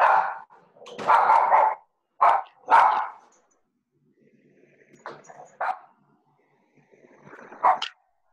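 A dog barking repeatedly: a quick run of barks in the first three seconds, then a few more, spaced out, later on.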